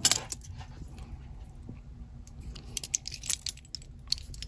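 Metal panel links of a black-and-silver bracelet clinking and clicking against each other and the glass shelf as the bracelet is picked up and handled, scattered light clicks that come more often in the second half.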